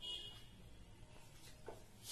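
Marker squeaking briefly on a whiteboard as a word is written, then faint room noise with a soft tap near the end.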